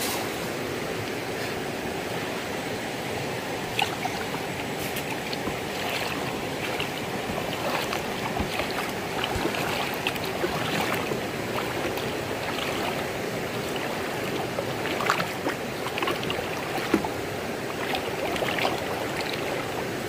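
A shallow rocky stream flowing steadily, with scattered small splashes from wading through it and handling a cast net.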